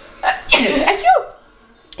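A woman sneezes once, loudly, about half a second in, from her allergies.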